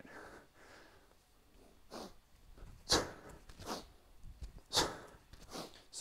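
A man's short, sharp breaths, about four quick puffs roughly a second apart, the kind of forceful exhales made while moving through a kettlebell drill.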